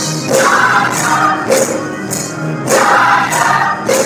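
Church choir singing a gospel song, with a tambourine keeping a steady beat a little under twice a second.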